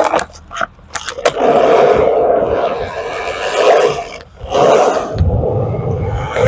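Skateboard knocking and clacking on the ledge's metal coping several times in the first second and a half as the trick is done, then the urethane wheels rolling on concrete with a steady rumble, dipping briefly about four seconds in before rolling on.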